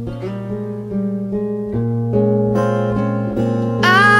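Acoustic guitar playing a slow instrumental passage, held bass notes under chords that change every second or two; a woman's singing voice comes in right at the end.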